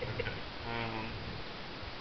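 A person's short murmured vocal sound, like a held 'mm', about three-quarters of a second in, with a few faint clicks near the start over low background noise.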